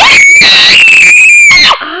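A young child screaming: one long, very loud, high-pitched shriek that holds its pitch for under two seconds and then cuts off suddenly.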